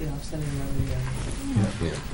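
Speech only: a man's voice drawing out a long, low "yeah".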